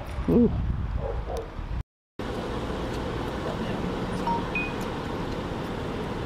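A brief "ooh" over outdoor wind noise, then after a sudden cut, a small car driving: steady road and engine noise heard from inside the cabin.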